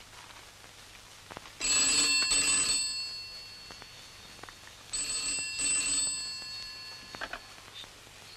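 Desk telephone bell ringing twice, each ring a little over a second long, the second starting about three seconds after the first.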